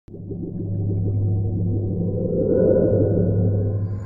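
Low synthesized drone in a logo-intro sound design, a steady deep hum with a murky texture that swells about halfway through and builds toward the logo reveal.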